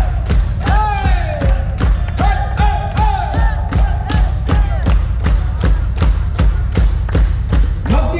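Live hard rock band playing a fast, even pounding beat over a heavy low bass, about three hits a second, while the crowd shouts and chants along.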